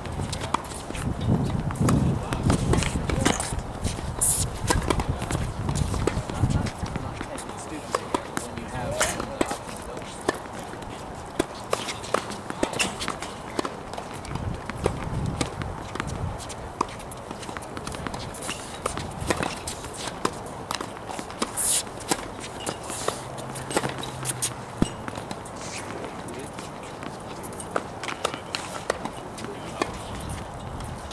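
Tennis balls being struck and bounced on outdoor hard courts: scattered sharp pops and taps, some close and some more distant, with a low rumble during the first several seconds.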